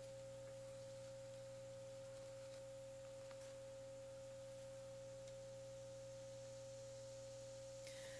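Near silence except a faint, steady electrical tone with a low hum under it, holding unchanged throughout.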